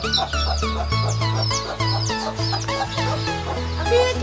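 Chicks peeping: many short, high, falling chirps over background music with a steady bass line.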